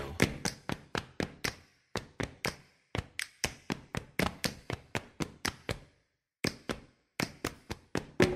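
Body percussion: hands clapping and slapping in a quick rhythm of about four sharp hits a second, broken by short stops, the longest about six seconds in.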